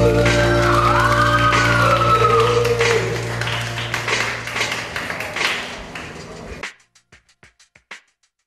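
The close of a band song: a held chord with a gliding melodic line over it, fading away over about six seconds and cutting off. A faint run of quick, evenly spaced ticks follows, dying out into silence.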